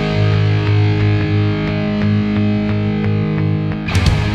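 Punk rock instrumental passage: distorted electric guitar chords held and ringing, with light regular drum ticks, and a sharp hit just before the end.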